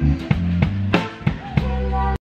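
Live band playing: drum kit struck on a steady beat under guitars and bass.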